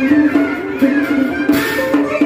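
Vietnamese traditional ceremonial music: a sliding melody on a bowed two-string fiddle with plucked guitar, and a cymbal crash about one and a half seconds in.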